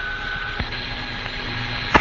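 Steady hiss of a Mercury capsule's air-to-ground radio link between transmissions. A faint high tone stops with a single click about half a second in, and a faint low hum follows.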